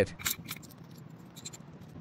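A few faint clicks and scratches of small metal parts being handled by hand, a washer being fitted onto a screw on a bicycle frame, mostly in the first half second, then only faint handling noise.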